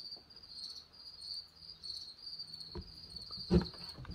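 A cricket chirping in a steady, pulsing high trill, with two light knocks near the end as chainsaw crankcase parts are handled on the bench.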